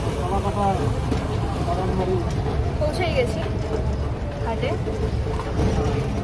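Riding in an open electric rickshaw through a busy street: a steady low rumble of the vehicle rolling along, with scattered voices of people around it.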